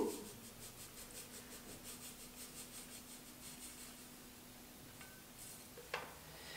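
Faint, soft sounds of powdered sugar being tipped from a Thermomix stainless-steel mixing bowl into a small plastic bowl, over a low steady hum, with a light knock near the end.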